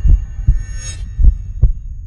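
Cinematic intro sound design: deep bass thumps in heartbeat-like pairs, a pair about every second, with a whooshing sweep a little before the middle. The upper sounds drop out near the end, leaving the low thumps.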